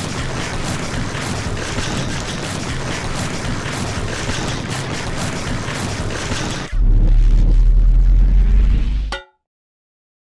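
A steady, dense rumbling noise for about seven seconds, then a louder, deeper rumble for about two seconds that cuts off abruptly into silence.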